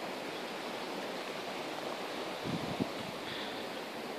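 Steady rushing of a stream running through the village, heard in the background, with a couple of faint low thuds about two and a half seconds in.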